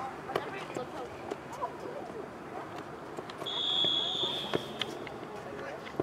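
A single steady whistle blast, about a second long, a little past halfway, signalling the play is over. Voices and shouts on the field run underneath, with a few sharp knocks.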